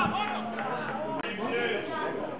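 Several men's voices of football spectators talking and calling out over one another, with one sharp click a little past halfway.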